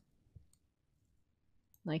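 A single faint click of a computer mouse button about a third of a second in, against quiet room tone.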